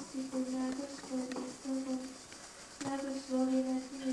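A congregation chanting in unison on one near-steady note, the sound broken into short syllables.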